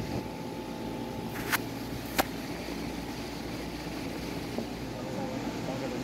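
Two sharp plastic clicks, about a second and a half and two seconds in, as a plastic fender liner is worked loose from a wheel well. Under them runs a steady low hum.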